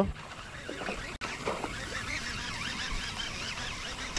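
Birds calling and chirping in quick, rising-and-falling notes over a steady low outdoor background.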